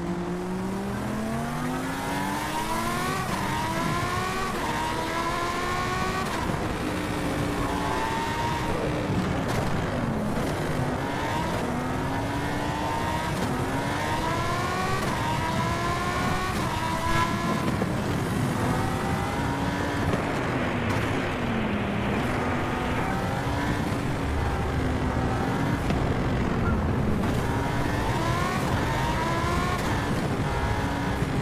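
Electric bike's motor whining under level-four pedal assist. Its pitch rises as the bike speeds up to about 25 mph, then keeps wavering up and down, over a steady rush of wind.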